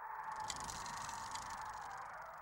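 Faint rattling, rolling noise of a bicycle riding away, with a few light ticks, slowly fading as it goes.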